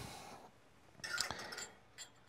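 Small glass espresso shot cups clinking and knocking briefly as they are set down on a metal drip tray, about a second in.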